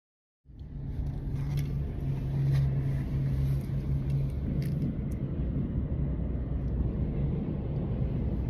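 Steady low rumble of a moving road vehicle heard from inside its cabin, with an engine hum underneath. It starts suddenly about half a second in.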